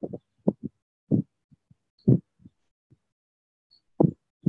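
A run of short, dull low thumps at uneven intervals, several in quick pairs, with dead silence between them; they die away about three seconds in.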